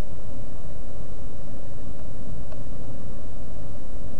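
Steady low rumbling background noise, with a faint click about two and a half seconds in.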